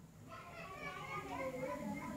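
Faint children's voices in the background, rising and falling in pitch, with no close sound over them.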